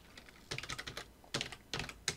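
Computer keyboard typing: two short, quiet runs of keystrokes, about half a second in and again in the second half, as the next stock is entered into the trading program.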